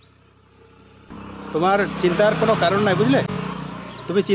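A person's voice, loud and unclear, over a steady background rush that comes in about a second in.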